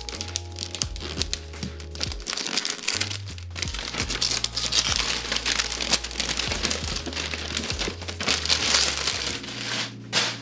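Glossy wrapping paper being torn and crinkled off a cardboard box by hand, a dense run of crackling rips, over background music with a steady bass line.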